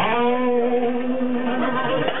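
A single pitched note slides up at its start, then holds with a slight waver for about a second and a half before fading.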